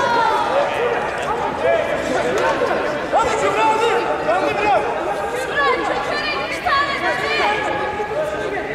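Several voices calling out and talking over one another at once, spectators shouting encouragement in a large hall.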